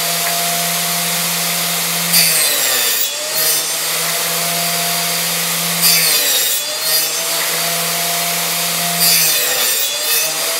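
Table saw running steadily while its blade cuts box-joint slots through stacked drawer sides pushed across on a box joint jig. Three cuts come about three to four seconds apart. Each brings a brief rise in cutting noise and a dip in the motor's pitch as the blade takes the wood.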